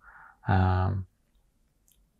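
A man's voice: a short intake of breath, then one brief spoken word about half a second in, followed by quiet room tone with a faint click near the end.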